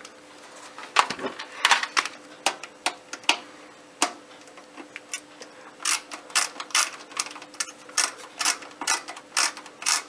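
Ratcheting screwdriver backing screws out of a satellite receiver's sheet-metal chassis: separate sharp ratchet clicks, scattered at first, then about three a second from about halfway through.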